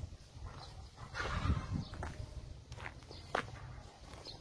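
Footsteps on a dirt road over a steady low rumble, with a louder noisy burst a little after a second in and a few sharp clicks near the end.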